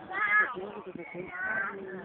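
Onlookers' voices murmuring, with two short high-pitched calls, one just after the start and one in the second half.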